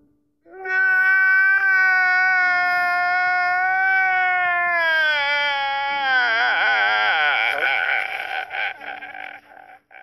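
A man crying out loud in one long, loud wail that slowly falls in pitch, then breaks into wavering, shaky sobs about six seconds in and trails off near the end.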